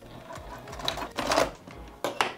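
Juki TL-2010Q sewing machine stitching across the ends of a fabric strap loop: a short burst of stitching, loudest about a second and a half in, then stopping.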